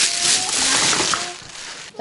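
Thin plastic carrier bags rustling and crinkling as groceries are handled, loud for about the first second and then fading.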